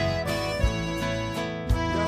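Instrumental passage of a live sertanejo band with no singing: held accordion chords over guitar, with a low beat about once a second.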